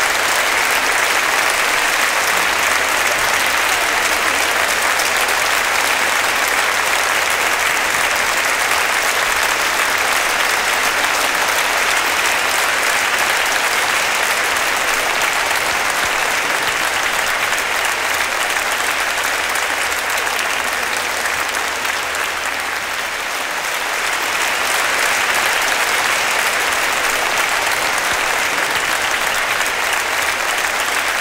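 Large audience applauding steadily, easing slightly about two-thirds of the way through before picking up again.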